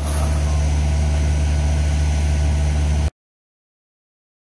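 Diesel engine of a Takeuchi mini excavator running steadily with a low hum while it works. The sound cuts off abruptly about three seconds in.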